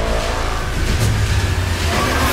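Sound design from the intro of a hardstyle track: a sustained, pitched, engine-like effect over a low hum, layered into the music.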